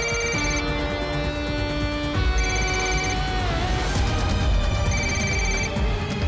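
A mobile phone ringing in short trilling bursts, three times about two and a half seconds apart, over sustained dramatic background music with a falling sweep in the middle.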